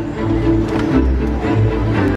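Music with held low notes over a deep bass.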